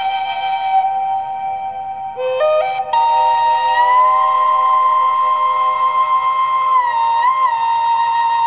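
Native American flute playing slow, long-held notes over a steady lower note. About two seconds in it steps up through a few notes to one high note held for several seconds, with a small dip and waver near the end.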